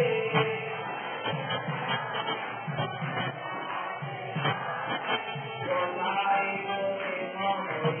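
Devotional kirtan music: voices chanting and singing over a steady beat of roughly two strokes a second.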